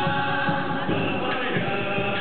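Men's vocal ensemble singing together, amplified through a PA system's loudspeakers.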